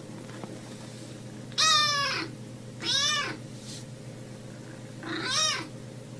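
Grey kitten meowing three times, each call rising then falling in pitch; the first call is the loudest.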